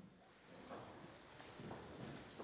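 Near silence with faint, scattered footsteps and shuffling of people moving between their seats.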